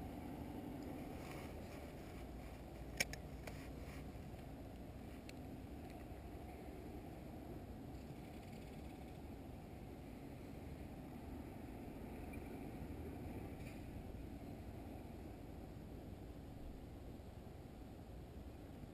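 Faint, steady low outdoor background noise, with a single sharp click about three seconds in.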